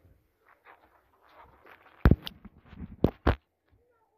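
Phone camera handling noise: faint rustling, then a pair of sharp knocks about two seconds in and another pair about a second later.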